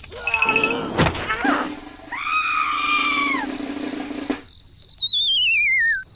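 Cartoon-style sound effects: short squeaky, high-pitched voice-like cries with a knock about a second in, then a longer held cry. Over the last second and a half comes a warbling whistle that slides steadily down in pitch.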